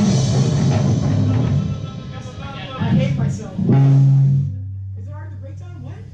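Rock band of electric guitar, bass guitar and drum kit playing loud through amplifiers; the playing thins out about two seconds in, with a few stray hits and a held chord a little later, then stops, leaving a low steady hum and quiet talk.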